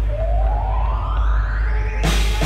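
Live band music: a single pitched tone glides steadily upward in pitch over about two seconds, over a low steady drone.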